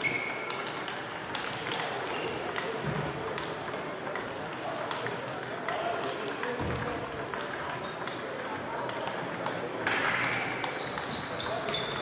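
Table tennis balls clicking irregularly off bats and tables from several matches being played at once, echoing in a large sports hall. Short high squeaks, most of them near the end, and a steady murmur of voices run underneath.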